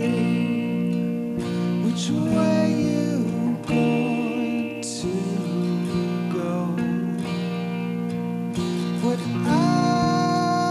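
Live band music: a man singing over strummed acoustic guitar and sustained chords, his voice coming in short phrases and rising again near the end.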